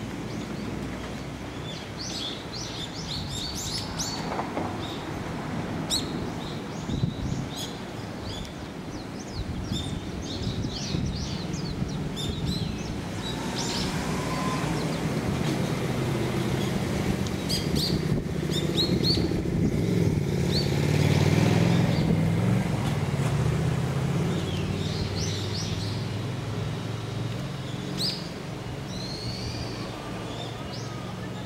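Small birds chirping in short, repeated calls, over a low rumble that swells and fades in the middle.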